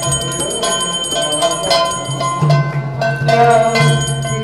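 Bell ringing steadily through devotional music with a steady beat of strikes, the sound of a temple arati as the lamp is offered.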